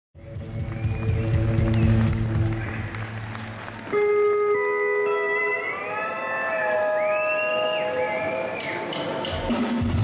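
Live country band music: the band plays for about four seconds, then the sound changes abruptly to a steel guitar playing long held notes that slide up in pitch, with guitars and drums coming back in near the end.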